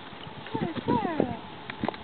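A few hoof steps from a yearling paint filly, short knocks near the end, with people's voices over them.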